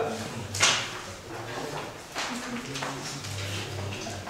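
Low, indistinct voices in a meeting room, with a brief sharp noise about half a second in.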